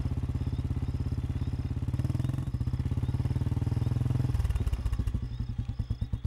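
Motorcycle engine running with a rapid, even beat. About four seconds in the beat slows and thins into separate thumps as the engine winds down.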